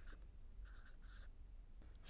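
A marker writing on a whiteboard: faint scratchy strokes, one short spell at the start and a longer one from about half a second to just over a second in.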